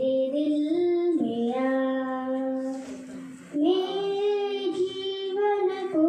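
A young girl singing a devotional song solo, holding long, steady notes and stepping up to a higher note about halfway through.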